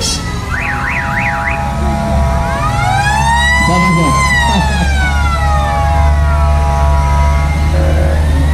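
Siren-style sound effects: three quick up-and-down warbles about half a second in, then a long wail that rises to a peak around the middle and slowly falls, over a steady low rumble.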